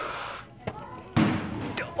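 A sudden thud about a second in: a flipped plastic water bottle landing on the floor, with voices over it.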